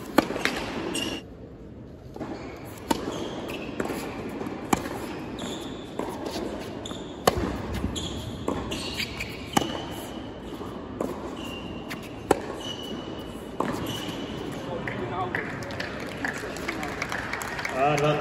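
A tennis serve and then a long rally on a hard court: about ten crisp racket-on-ball strikes, one every second and a bit, for some fourteen seconds, with shoes squeaking between them.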